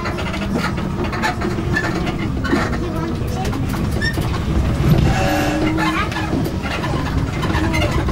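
Outdoor ambience: a steady low rumble with scattered, indistinct distant voices.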